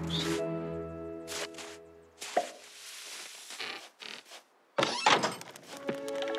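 Cartoon soundtrack: background music breaks off about two seconds in and gives way to a string of knocks and swishing sound effects. After a brief silence comes a loud burst of noise near the end, and the music starts again.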